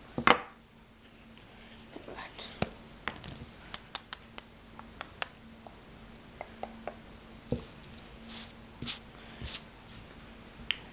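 Hands handling a spice container and spoon: a rustle against the microphone at the start, then a run of sharp clicks and light clinks in the middle, and a few short breathy hisses near the end.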